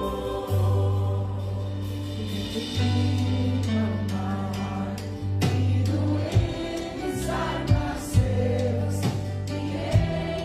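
Live worship band music: sustained bass notes under guitars and keyboard, with voices singing. Sharp drum hits come in from about halfway.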